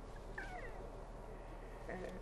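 A pause in speech: room tone with a steady low hum, and one faint, short, high squeak that bends down in pitch about half a second in.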